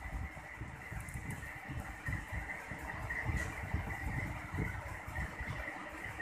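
Low, uneven background rumble with a faint steady high-pitched whine underneath, room noise picked up by a phone microphone.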